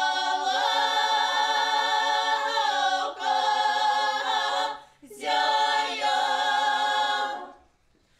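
Mixed folk choir of women's and men's voices singing a Belarusian folk song unaccompanied, in sustained harmony. It runs in three phrases with short breaks between them, and the last phrase ends about half a second before the end.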